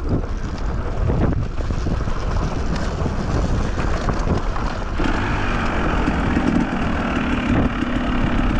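Dirt bike engine running as the bike climbs a rough, rocky dirt trail, with wind noise on the microphone. About five seconds in the engine note becomes louder and steadier.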